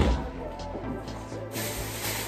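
Background music playing, with a knock at the very start and a steady hiss coming in about a second and a half in.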